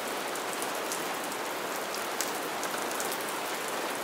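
Steady rain falling, an even hiss with a light patter of drops.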